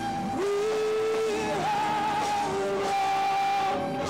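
Live industrial rock music in a sparser passage: long, slightly wavering high notes are held over thin backing, with little bass or drums.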